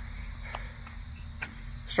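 Steady high-pitched chirring of insects over a low steady rumble, with a couple of faint ticks.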